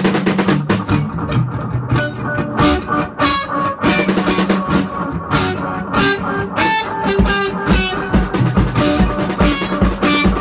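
Band playing guitar and a drum kit, with regular drum strokes throughout. About seven seconds in, a steady kick-drum beat comes in.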